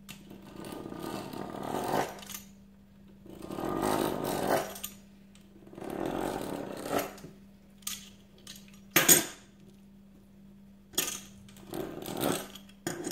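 A fluted metal pastry wheel rolling across a sheet of dough on a countertop, three separate cutting passes, each a rolling rattle of a second or two. A few sharp clicks follow in the second half.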